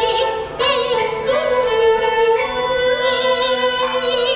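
Peking opera singing by a female voice, long held notes with a wavering vibrato, over instrumental accompaniment, with a short break about half a second in.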